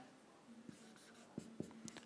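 Faint marker writing on a whiteboard: a few soft taps and strokes against near silence.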